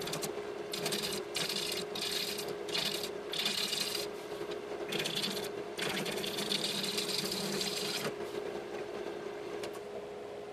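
Bowl gouge cutting a spinning olivewood bowl blank on a wood lathe: a scraping hiss in a run of passes, most under a second, the last lasting about two seconds, stopping about two seconds before the end. A steady machine hum from the running lathe and dust collector runs underneath.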